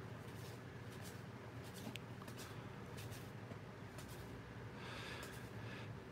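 Faint rustling and soft ticks of cardboard 1984 Fleer baseball cards being slid one at a time from one stack to the other by hand, over a low steady room hum.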